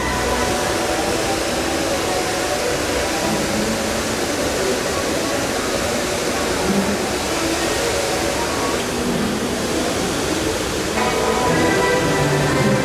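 A steady rushing noise that sets in suddenly and holds evenly, with faint music underneath.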